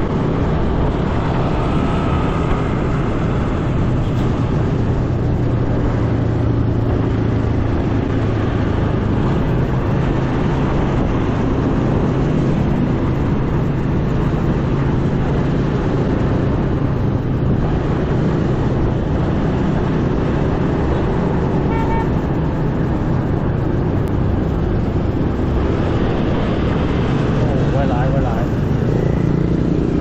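Riding a motor scooter in busy city traffic: the scooter's engine runs steadily amid a continuous rumble of other motorbikes and cars on the road.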